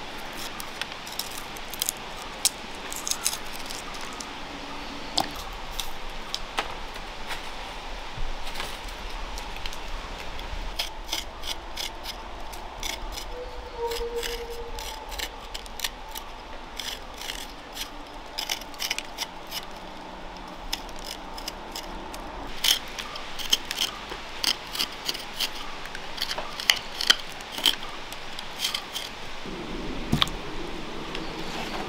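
A small knife clicking and scraping against garlic cloves and then a piece of ginger as they are peeled by hand, in quick irregular ticks that grow denser and louder through the second half.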